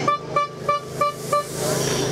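A vehicle horn giving a quick run of about five short, even toots, roughly three a second, over a low steady hum.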